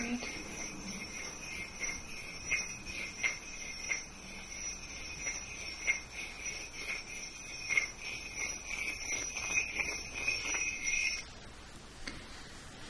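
Selenite crystal wands tapped and clicked together in irregular light taps, over a steady high ringing tone that cuts off suddenly near the end.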